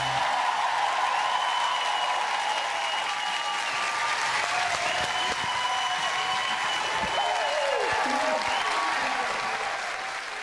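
Studio audience applauding steadily at the end of a live dance performance, with cheering voices mixed in.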